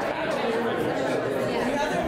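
Many people talking at once in a large room: overlapping conversations, with no single voice standing out.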